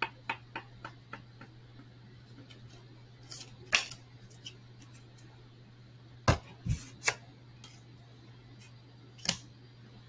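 A string of sharp clicks and taps: four light ones in the first second, a louder one near four seconds, three more close together around six to seven seconds and one near the end. A steady low hum runs underneath.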